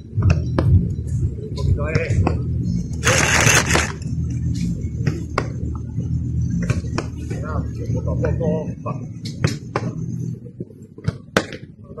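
Footballs being struck and caught in goalkeeper drills: a string of sharp thuds from kicks and gloved catches, with voices calling out in the background and a steady low rumble. A brief burst of hiss comes about three seconds in.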